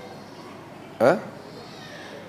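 A man's short questioning "huh?" with rising pitch, about a second in, over faint room tone.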